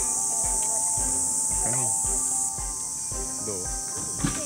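Cicadas in a steady, high-pitched chorus that drops in level a little past halfway, with background music with a steady low beat underneath.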